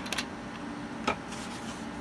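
A few light, sharp clicks of keys being pressed: two close together at the start and another about a second in, over a steady low room hiss.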